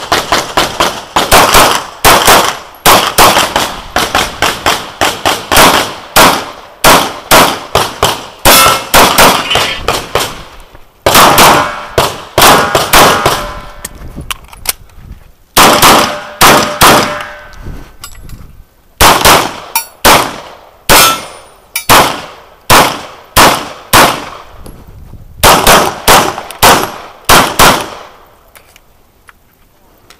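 HK USP pistol firing a long run of shots on a USPSA stage, in quick pairs and rapid strings with brief pauses between strings. The shooting stops about two seconds before the end.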